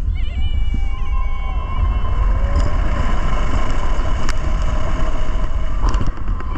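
Kraken, a Bolliger & Mabillard floorless steel roller coaster, running at speed: wind rushes over the microphone under the deep rumble of the train on the track. A rider gives a high scream in the first couple of seconds, a steady high tone runs under the rest, and there are a few sharp clacks near the end.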